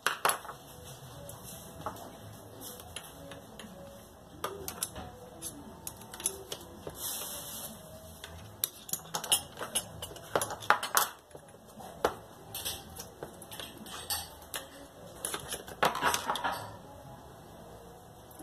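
Irregular clicks, taps and metallic clinks of an angle grinder's gear head being taken apart by hand, its small metal parts knocking together, with a brief scrape about seven seconds in.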